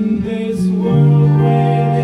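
A rock band playing live, with an acoustic guitar among the instruments. A deep held note comes in about a second in and sustains under the music.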